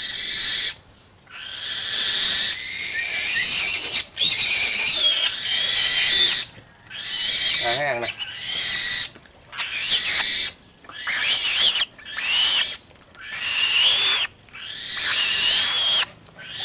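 A captive bird of prey, kept as a falconry bird, calling over and over as it comes to the gloved fist to be fed. It gives a run of harsh, wavering calls, each a second or two long, with short breaks between them.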